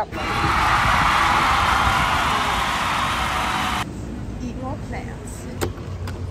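A steady, even hiss that cuts off abruptly about four seconds in. Near the end comes a single click as a brass lever handle on a shop door is pressed down.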